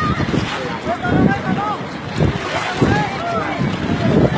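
Wind buffeting the microphone on a boat in rough, choppy sea, with people shouting and crying out in short calls through it.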